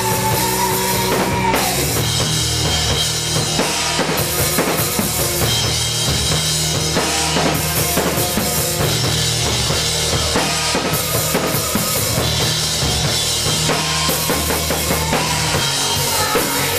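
Live rock band playing, with the drum kit loud and driving a steady beat over sustained bass and other instruments.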